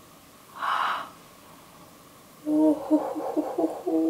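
A woman's sharp gasp about half a second in, then from about two and a half seconds a wordless, pitched "ooh" of amazement, choppy at first and then held.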